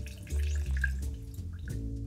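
Soft background music with a slow, low bass line. Under it, faint trickling and dripping of lime juice from a hand citrus squeezer into a glass mixing glass.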